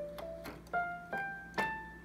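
Casio CTK-3200 electronic keyboard on a piano voice, playing the top of an ascending A Aeolian (natural minor) scale. Four single notes step upward about every half second, and the last, the high A, rings on and fades.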